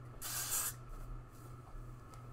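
Synthetic wig hair swishing as it is shaken out: one short hiss about half a second long, early on, over a faint low hum.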